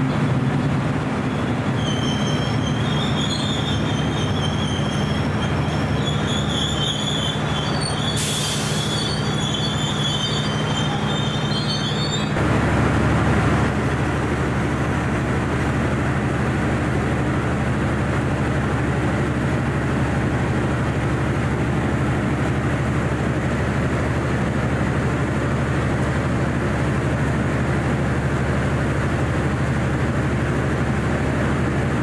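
Passenger train running slowly through a station, heard from an open viewing car: a steady low rumble with high-pitched wheel squeal from about two seconds in, and a short hiss near the eight-second mark. The squeal stops about twelve seconds in, and the rumble changes pitch and briefly grows louder.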